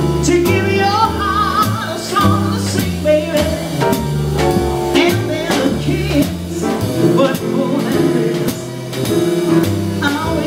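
Live jazz combo: a woman singing into a microphone over an upright bass walking steady notes, with drum kit cymbals and piano.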